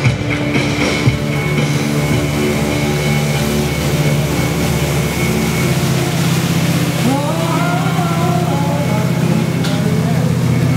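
Music playing over the steady drone of a ski tow boat's engine, the engine coming up stronger a few seconds in as the boat passes.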